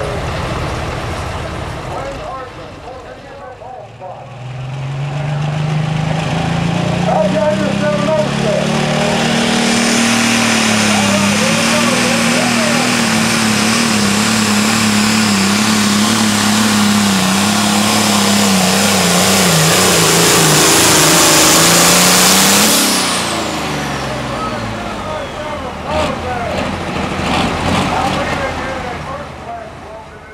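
A diesel John Deere 4455 pulling tractor under full load, dragging a sled. About four seconds in the engine climbs to full power and holds there, its pitch wavering, with a loud rushing hiss above it. About 23 seconds in the throttle is cut and the pitch falls away, leaving the engine running much lower.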